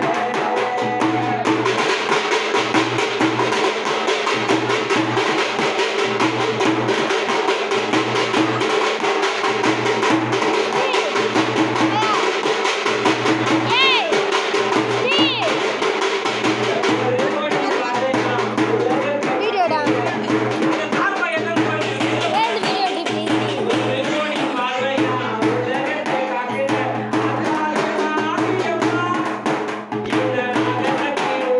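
Large frame drum beaten with a stick in a steady, repeating rhythm, with a voice singing or chanting over it.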